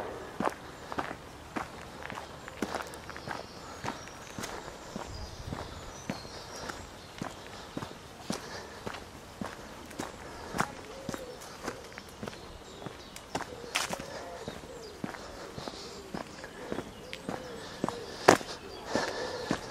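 Footsteps on a dirt and grit path at a steady walking pace, about two steps a second.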